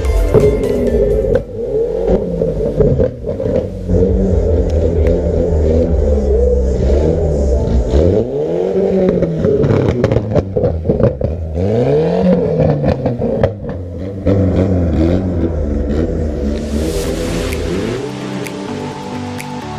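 Lowered car's engine being revved over and over, its pitch rising and falling in repeated swoops, with clattering and rattles in between.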